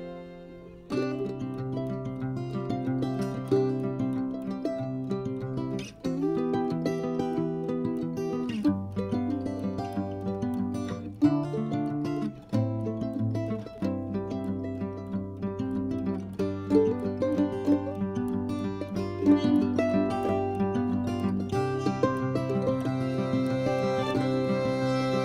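Background music played on plucked strings, with notes and chords changing every second or two.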